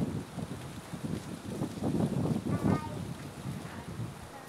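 Wind buffeting the microphone in low, uneven rumbles, with a brief high voice about two and a half seconds in.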